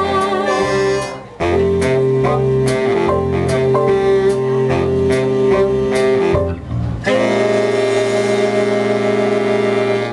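High school big band jazz ensemble, saxophones and brass, playing the closing bars of a swing arrangement with sharp accented hits; a short break about a second in, then a long held final chord from about seven seconds that is cut off at the end.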